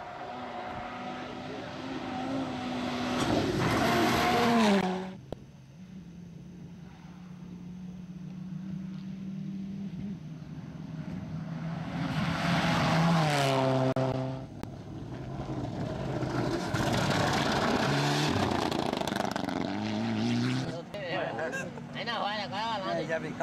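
Rally cars at full throttle on gravel stages, passing one after another: each engine note climbs as a car approaches and drops in pitch as it goes by, with gearshifts in between. The sound breaks off abruptly about five seconds in and again near the end, where it cuts from one car to the next.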